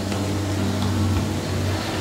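Steady low background hum with faint hiss, and no distinct event; the pressing of the dough on the leaf makes no clear sound.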